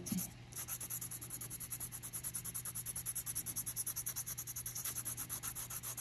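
Light blue colored pencil scratching across paper in rapid, even back-and-forth shading strokes, several a second, laying close-set lines of blue over the water of a drawing.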